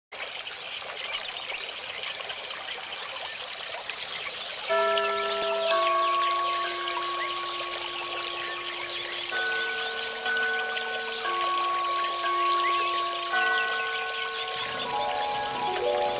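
Fountain water trickling and splashing steadily, with a gentle instrumental melody of slow, held notes coming in about five seconds in and filling out with lower notes near the end.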